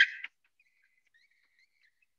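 Faint, broken squeaking of a marker or chalk being drawn across a board, a thin high wavering squeak in short stretches.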